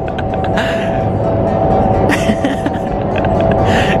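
Indoor skydiving vertical wind tunnel running loud and steady: a rushing roar of air with a held hum-like tone. Brief swells of hiss come about two seconds in and again near the end.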